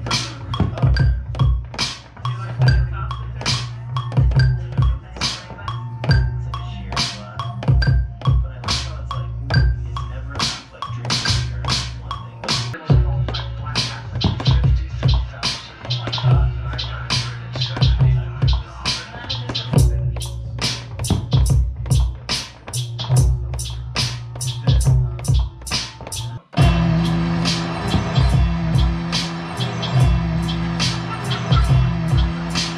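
Hip hop beat played from an Akai MPK mini controller, built on a sampled vinyl record: deep bass and steady, regular drum hits. The beat cuts out for an instant about halfway, then again near the end, where it changes to held chords.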